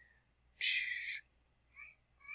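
A baby vocalizing in the background: a short high-pitched squeal about half a second in, then two brief faint sounds near the end.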